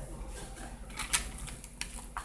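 A few sharp clicks of an eating utensil against a food bowl, the loudest about a second in, over a low steady room hum.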